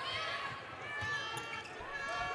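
Court sound of a basketball game in play: high, short squeaks of sneakers on the hardwood and faint players' calls, over the steady hum of the arena.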